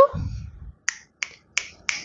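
Four finger snaps, about three a second, following a brief low rumble.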